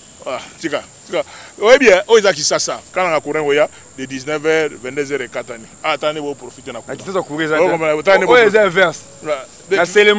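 Men talking back and forth in lively conversation, with a steady high-pitched chirring of crickets behind the voices.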